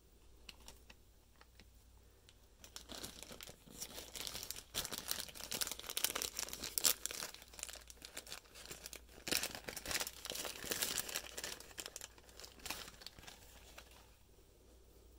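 Crinkling and rustling of component packaging being handled, dense and irregular with small sharp crackles. It starts about three seconds in and stops near the end.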